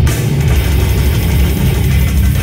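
Live death metal band playing at full volume: heavily distorted electric guitars, bass and drums in a dense, heavy wall of sound, recorded from within the crowd.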